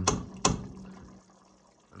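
A metal ladle stirring thick chili in a stainless steel stockpot: two sharp clinks of the ladle against the pot in the first half second, with wet stirring sounds that fade away.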